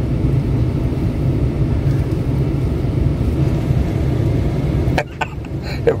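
Steady low rumble and hiss inside the cab of a parked truck with its engine idling; it drops away suddenly about five seconds in.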